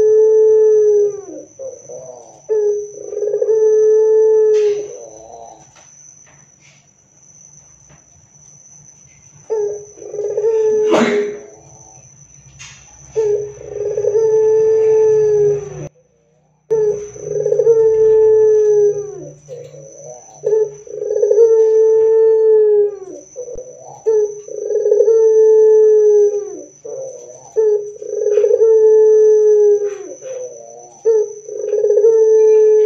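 Ringneck dove (Barbary dove) cooing: about eight long, even coos, each about two seconds and falling off at the end, repeating every few seconds with a longer pause in the first third. A sharp knock sounds about eleven seconds in.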